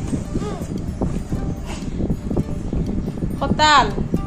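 A quick run of irregular light knocks and rustles: a child handling and packing a fabric school backpack, its buckles and contents.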